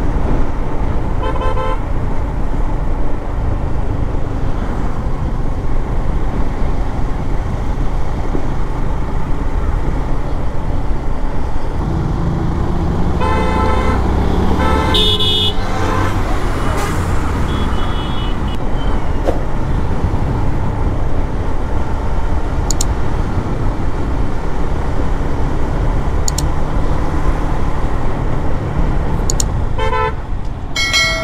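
Wind rumbling on the microphone of a moving motorcycle, with the engine running underneath, as vehicle horns honk several times: a short toot about a second and a half in, a cluster of honks around halfway through, another brief one a few seconds later, and one more near the end.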